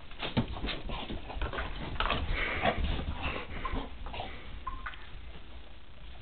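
Dogs playing with a tennis ball: a busy run of quick clicks and scuffles, with a brief high whine near the end.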